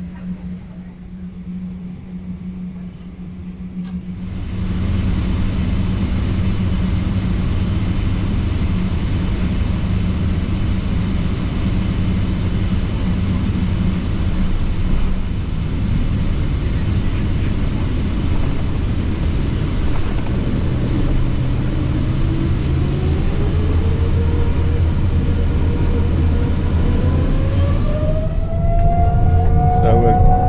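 Steady hum inside the cabin of a Boeing 777-200ER, then from about four seconds in the much louder rumble of its GE90 jet engines heard through the fuselage as the airliner lines up on the runway. In the last third the engine whine glides up in pitch and levels off as the engines spool up to takeoff thrust.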